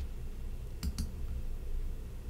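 Two quick, sharp clicks close together about a second in, from a computer click advancing the slide, over a faint low room hum.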